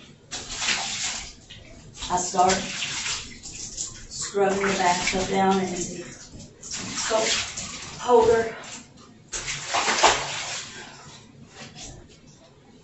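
A bathtub being scrubbed by hand with Ajax cleanser and bleach: bursts of scrubbing and water swishing, each about a second long, come four times.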